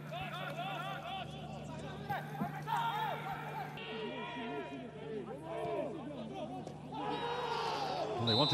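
Players' voices shouting and calling to each other across the pitch in a stadium with empty stands, several voices overlapping, over a steady low hum that stops about halfway through.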